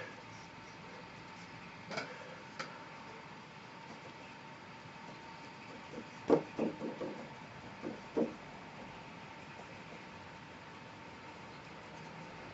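A few light knocks and taps, from painting gear being handled, over quiet room tone with a faint steady hum; two small clicks come about two seconds in, and a cluster of louder knocks comes around six to eight seconds in.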